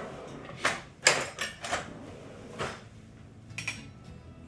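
Kitchen utensils clattering and knocking as a metal cake lifter is fetched, with a drawer-like slide and bump: a series of separate sharp clinks and knocks, loudest about a second in.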